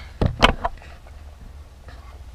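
Handling noise from a small action camera being grabbed and repositioned: a quick cluster of knocks and rattles in the first half-second or so, the sharpest about half a second in, then only a low steady hum.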